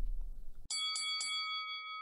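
A bright bell-like chime used as a segment-break stinger: about four quick strikes in a row about two-thirds of a second in, then several ringing tones that slowly fade.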